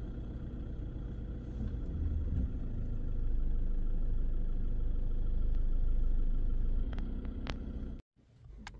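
A low, steady outdoor rumble that grows louder about three seconds in and eases near the end, with two sharp clicks just before it stops.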